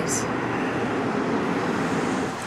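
Steady low rumble of distant vehicle noise.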